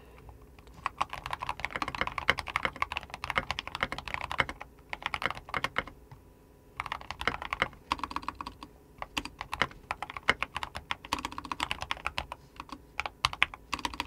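Typing on a computer keyboard: fast runs of key clicks that stop for about a second a little before the middle, then go on.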